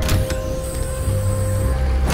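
Trailer sound design: a deep low rumble under held, droning music tones, opened by a sharp hit, with a thin high tone hanging for about a second in the middle.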